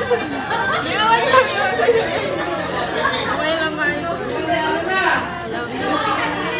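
Several voices talking and chattering at once, with no single clear speaker.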